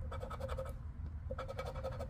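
Edge of a poker-chip scratcher scraping the latex coating off a lottery scratch-off ticket in two strokes, each a rapid rasping lasting about half a second.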